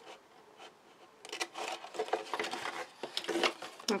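Scissors snipping through black cardstock, with the card rustling as it is handled: a run of short, crisp cuts and rubs that starts about a second in.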